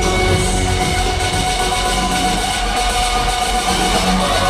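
Live pop concert music through an arena sound system, recorded from the audience: held synth tones over a steady bass beat.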